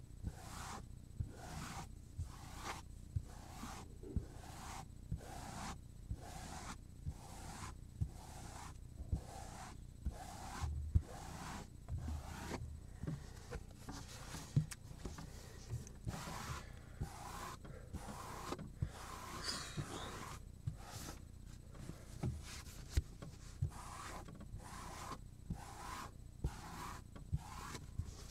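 Rhythmic rubbing strokes on a cutting board, about two a second, each a short dry swish, with a few light taps mixed in.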